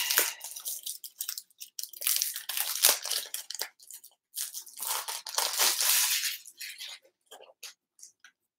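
Plastic shrink-wrap being torn and peeled off a tarot card box, crinkling and crackling in two main spells, about two seconds in and again around five seconds, with small crackles between.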